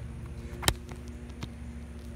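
Loose asphalt shingle tab flipped up by hand and slapping back down: one sharp snap about two-thirds of a second in and a fainter one later. The tabs have lost their adhesion to the course below.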